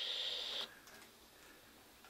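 Steady, thin, high-pitched hiss from a Casio SY-4000 handheld TV's small speaker as tape playback runs out. It cuts off suddenly about two-thirds of a second in, leaving near silence.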